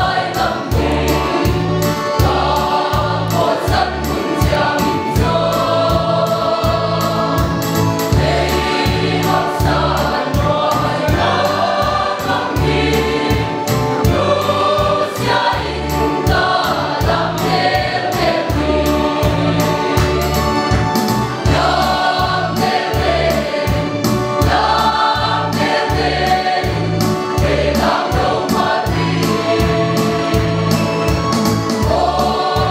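Mixed choir of women's and men's voices singing a hymn together, over a steady low rhythmic beat in the accompaniment.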